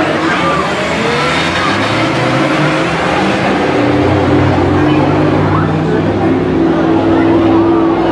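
A Honda Civic and a Volkswagen sedan from a 4/6-cylinder street-car class accelerating away from a standing start on a dirt oval. Their engines grow louder about halfway through, then hold a steady high note as the cars race down the straight into the turn.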